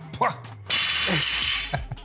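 A sudden shattering crash, like breaking glass, starting a little past a third of the way in and fading within about a second.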